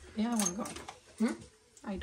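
A woman's voice making three short wordless vocal sounds with a swooping pitch.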